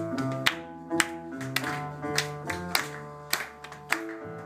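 Live acoustic trio playing: oud melody over upright double bass notes, with congas struck by hand in sharp beats about twice a second.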